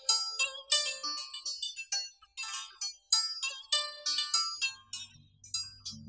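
Đàn tranh (Vietnamese zither) played by plucking: a melody of bright plucked notes, several a second, each ringing and dying away. Near the end the plucking stops and a low steady hum comes in.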